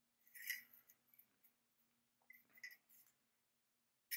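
Near silence, broken by a few faint, short clicks and rustles of thin 28-gauge craft wire being handled by hand, about half a second in and again after two seconds, over a faint steady room hum.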